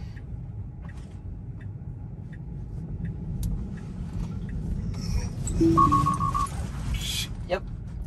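Tesla Model 3 cabin with the low rumble of road and tyre noise, growing louder toward the loudest point about six seconds in. There, a car alert sounds as five quick high beeps, as the car nearly hits another car.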